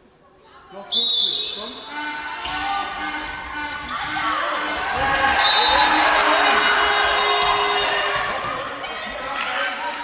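Handball game in an echoing sports hall: a referee's whistle sounds about a second in and again briefly around the middle. Between them, the handball bounces on the floor and many players and bench members shout over one another.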